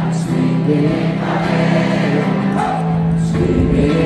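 Live folk-rock band playing with singing, recorded by phone from high in the stands of an open-air concert: steady, sustained low notes under the vocal line.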